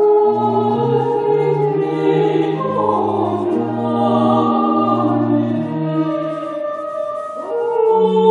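Children's and youth choir singing long held notes in several parts at once, in a church. The sound dips briefly near the end before the next phrase comes in louder.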